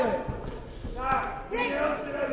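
A man's short shout about a second in, over a few dull thumps from the boxing ring, in a large hall.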